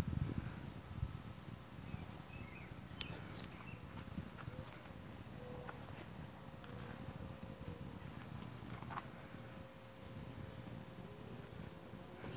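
Faint outdoor background of low rumbling handling noise from a handheld camera being moved around, louder in the first second or two, with a few soft scattered knocks.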